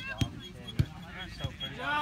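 Three dull thumps of a soccer ball being kicked as a player dribbles it, spaced a little over half a second apart, the middle one loudest.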